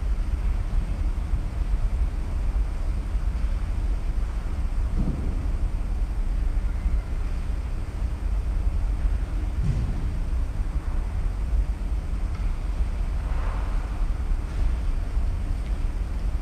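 Steady low background rumble with a light hiss, broken by a few faint knocks about five and ten seconds in and a soft rustle a little later.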